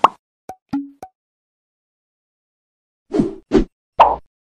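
Cartoon pop and click sound effects. A sharp pop comes right at the start and three quick short clicks follow within the first second, two of them with a brief low tone. Two fuller, deeper pops come about three seconds in.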